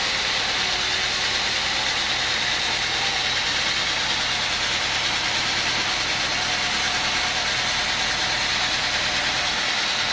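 Band sawmill running steadily, its blade cutting lengthwise through a teak log.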